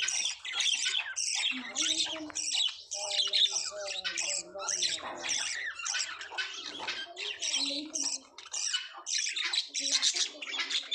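A flock of caged budgerigars chattering and squawking: a dense, unbroken run of short, high calls, several a second, with lower warbling mixed in.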